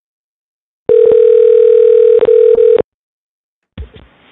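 Telephone ringback tone over a phone line: one steady ring about two seconds long as an outgoing call is placed, then silence. Near the end there is a short burst of faint line noise as the call connects.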